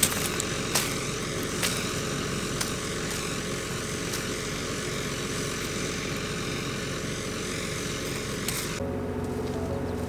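Farm tractor and air seeder running steadily: an even engine-and-fan noise with a faint hum, and a few light clicks in the first two seconds. Near the end the sound cuts abruptly to a lower, steadier engine hum.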